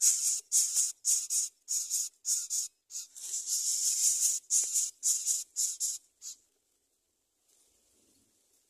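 Greater coucal chicks in the nest giving a run of short, raspy hisses, about two or three a second with one longer hiss near the middle. The hissing stops about six seconds in.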